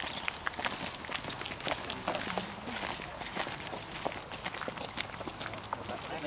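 Footsteps of people walking, an irregular run of scuffs and knocks, with faint voices talking in the background.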